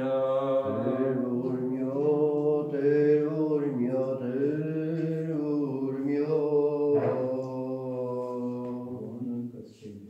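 A male voice chants an Armenian Apostolic morning-office hymn in long, slowly wavering held notes, then fades out near the end.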